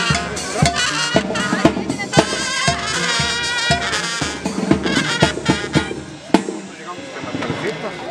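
Brass band music with wavering horn lines over a drum beat about twice a second, dying away after a sharp click near the end.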